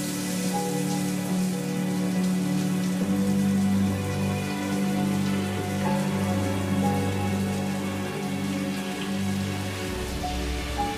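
Shower head spraying water steadily, over a background music score of low held notes that shift every few seconds.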